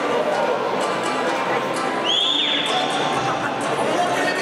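Crowd chatter and music in a boxing arena's hall, with no single voice standing out. About halfway through, a high whistle-like tone sounds over it and holds for about a second and a half.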